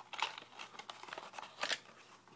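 Small cardboard box being opened by hand and a metal doorbell buzzer slid out of it: scattered rustling and scraping with a few light clicks, a sharper click near the end.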